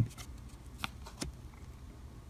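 Faint handling of 1987 Topps cardboard baseball cards held in the fingers: two light ticks of card against card, one a little under a second in and the second shortly after.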